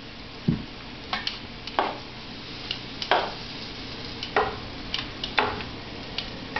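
Flour-coated pheasant pieces sizzling in hot oil in a skillet, with about half a dozen sharp clicks of a cooking utensil against the pan as the pieces are turned and lifted out.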